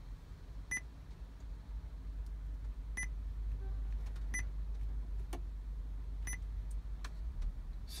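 Short high touch-feedback beeps from an Android car head unit as its touchscreen is tapped, four beeps at irregular spacing with a couple of fainter clicks between them, over a steady low hum.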